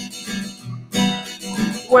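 Acoustic guitar strummed in a folk song's instrumental gap, with a strong chord stroke about a second in. A man's singing voice comes in at the very end.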